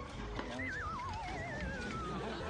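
A horse whinny laid in as a comic sound effect: two overlapping wavering calls, each falling steadily in pitch, the first beginning about half a second in.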